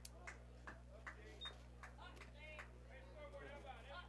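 Near silence: faint, indistinct voices of spectators talking, over a steady low electrical hum.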